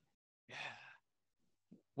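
A man's soft, breathy "yeah", close to a sigh, about half a second in; otherwise near silence.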